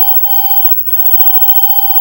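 Steady electronic tone from the Philips CRT television running under test after its recap: a mid-pitched tone with several higher tones held over it. It breaks off for an instant a little under a second in, then carries on.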